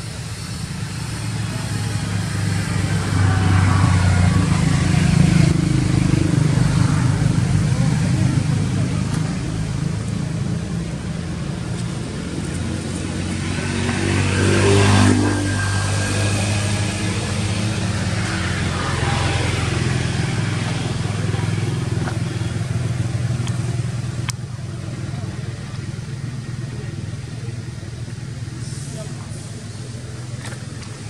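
Motor vehicle engines passing by. The sound swells over the first few seconds, and the loudest pass comes about halfway through, its pitch falling as it goes away.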